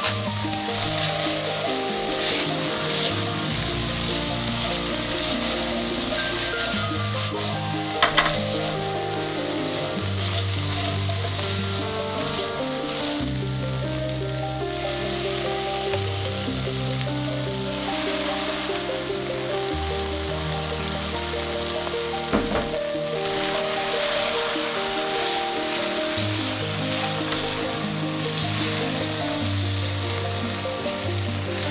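Chickpeas frying in hot oil in a stainless steel pan, a steady sizzle, with a spatula stirring in curry paste near the end. Two sharp clicks, about eight and twenty-two seconds in.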